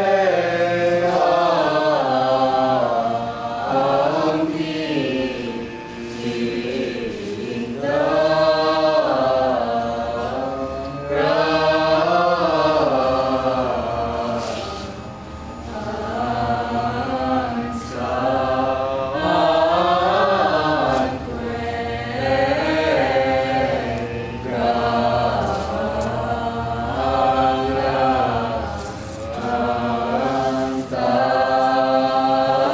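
Choral chant: several voices singing slow, wavering phrases a few seconds long, with short breaths between them, over a steady low drone.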